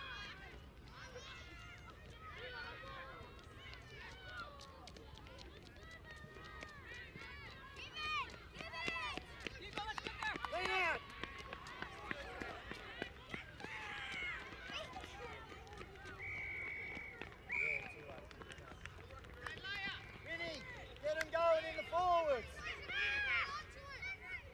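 Shouts and calls from players, coaches and spectators across an open sports field, in bursts that grow louder in places, with a brief steady high whistle-like note about two-thirds of the way through.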